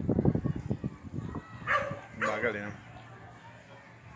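A dog gives two short barks close together near the middle.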